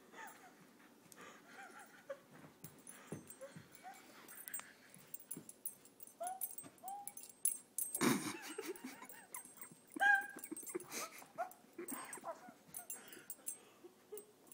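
A dog whimpering in short, high, arching whines scattered through the stretch. Two louder sharp knocks land about eight and ten seconds in.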